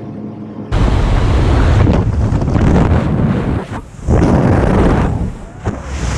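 Skydiving freefall wind rushing hard over an action camera's microphone. It starts suddenly about a second in, as he leaves the aircraft, and keeps on loudly, with two short dips.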